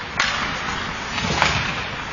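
Ice hockey faceoff: sticks clacking on the ice as the puck drops, with skate blades scraping the ice and one sharp crack of stick or puck about one and a half seconds in.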